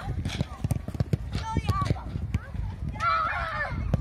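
Children's voices shouting and calling out over irregular thuds of feet running on a grass pitch, with a louder burst of shouting about three seconds in.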